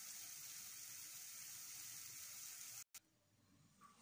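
Mashed banana cooking in melted butter and sugar in a frying pan, sizzling faintly as a steady hiss. The hiss cuts off suddenly about three seconds in.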